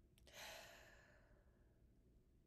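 A woman's soft sigh: a breathy exhale starting just after the start that fades out over about a second.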